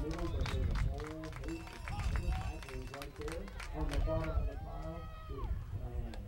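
Several people talking and calling out, not close to the microphone, with no single clear speaker, over a steady low rumble.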